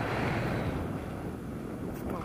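Wind rushing over the camera's microphone in paraglider flight: a steady rumbling noise that eases slightly in the second half.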